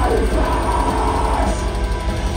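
Black metal band playing live: distorted electric guitars over fast, dense kick drumming, with a harsh vocal that is held and then falls in pitch.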